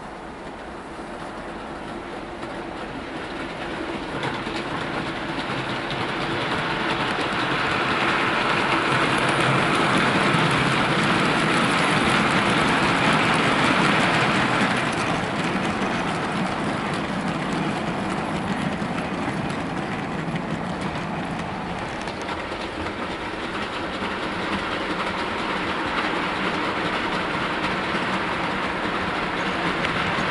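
A rake of Hornby OO gauge HAA hopper wagons running along model track. The rolling sound swells to its loudest from about eight to fifteen seconds in, drops suddenly, then holds steady and grows slightly toward the end.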